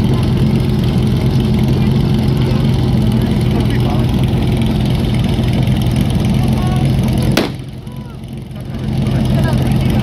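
An engine running steadily at constant speed, with faint voices underneath. A bit over seven seconds in, a sharp click comes and the sound drops in level for about a second and a half before returning to the same steady run.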